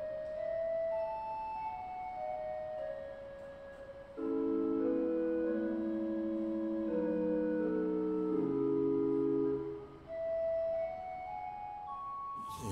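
Pipe organ playing sustained notes: a quiet melodic line, then from about four seconds in a louder passage of held lower chords, which breaks off near ten seconds before a higher line picks up again.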